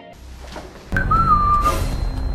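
About a second in, a single whistled note sounds: it starts a little higher, drops, and is then held steady for under a second. Low background music comes in at the same moment.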